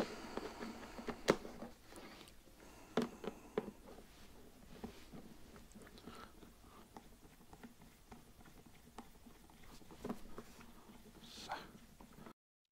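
Plastic spark-plug access cover being set onto the plastic housing of a Black+Decker BXGNi2200E inverter generator and its screw turned with a screwdriver: faint scattered clicks and scrapes, with a few sharper knocks in the first few seconds.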